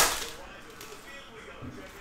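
Foil trading-card pack wrapper torn open, one sharp crackle right at the start, then only faint handling noise.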